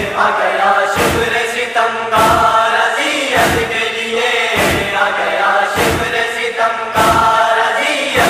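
Nauha lamentation: a chorus of voices chanting a sustained refrain, marked by a sharp beat about every 1.2 seconds in the rhythm of matam (chest-beating).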